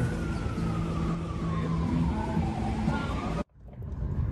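A siren slowly winding down in pitch over a steady hum of traffic. The sound cuts off abruptly about three and a half seconds in.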